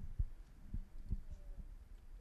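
Handling noise on a handheld microphone as it is lowered and held out: a few soft, low thuds over quiet room tone.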